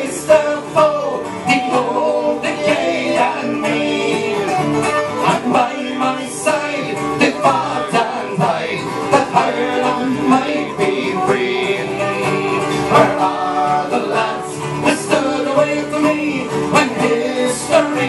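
Irish folk band playing a ballad live: strummed acoustic guitar and banjo with a flute carrying the melody.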